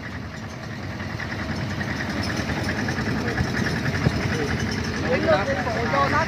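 Old farm tractor's engine chugging as it drives along, growing louder over the first couple of seconds. A voice speaks near the end.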